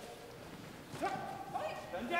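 A long yelled kihap shout about a second in, rising at the start and then held, echoing in the gym.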